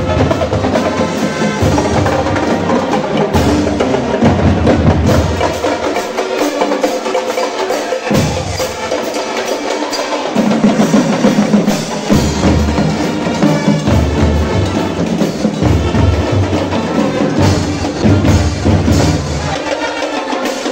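Marching band playing on parade: trumpets, trombones and sousaphones over marching bass drums, snare drums and cymbals, in a steady driving rhythm. The deep bass drops out briefly twice in the middle, then comes back in.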